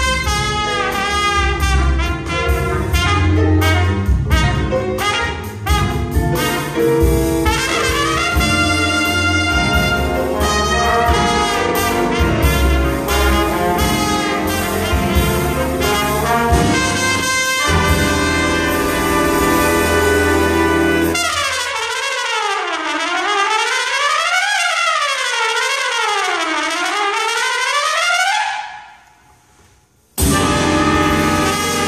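Live big band jazz with the brass section loud and trumpets on top, over saxophones, upright bass and drums. About 21 seconds in the full band drops out. A single pitch then swoops up and down about three times and fades away near the end.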